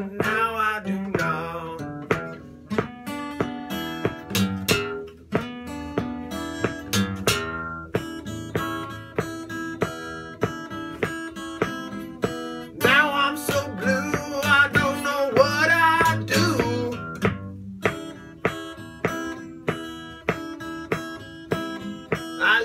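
Sierra steel-string acoustic guitar playing a blues instrumental break: picked single notes over a bass line, with a stretch of wavering, bent notes in the middle.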